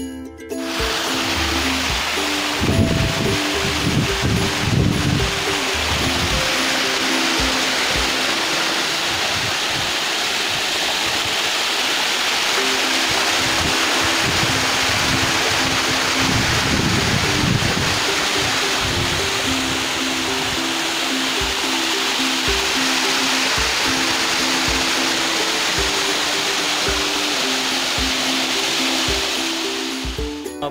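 Rainwater cascading down a stone stairway, a steady loud rush, with a few low rumbles about 3 s in and again around 17 s. A simple background melody runs over it.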